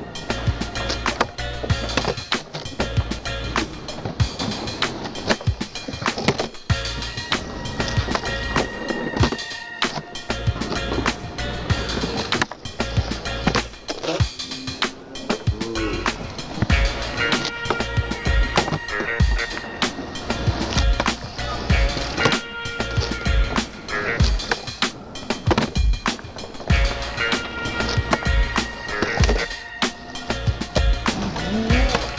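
Skateboards on concrete flatground: wheels rolling, tails popping and boards landing in many sharp knocks, over a music track with a steady beat.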